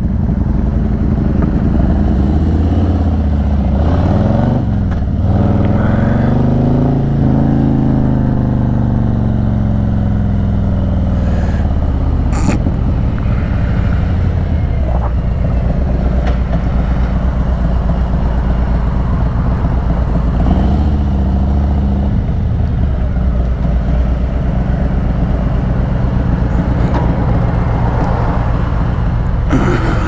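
Harley-Davidson Electra Glide's V-twin engine running at low speed, its pitch dipping and picking up again a few seconds in, then falling away as the bike slows. After that it idles steadily.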